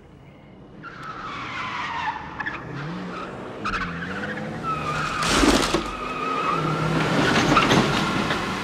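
A car approaching fast, its engine revving and its tyres screeching, growing louder.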